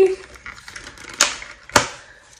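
Two sharp clicks, about half a second apart, from handling the small perfume bottles and their packaging.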